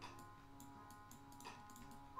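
A few faint clicks at the computer, mostly near the end, over quiet background music with sustained tones.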